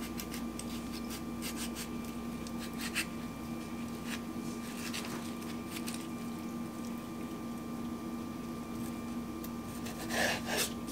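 Faint, sparse ticks and soft squelches of a kitchen knife cutting the skin off a fleshy aloe vera leaf, over a steady hum.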